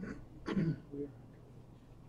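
A person clearing their throat: a short, rough burst about half a second in, followed by a brief hum.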